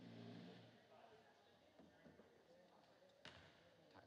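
Quiet gymnasium with faint voices and one sharp bang a little past three seconds in, a basketball striking the court or the rim during a free throw. A brief low hum sounds in the first second.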